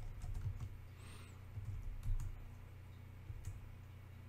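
Computer keyboard typing: a few short clusters of faint keystrokes as a terminal command is typed and entered, over a low steady hum.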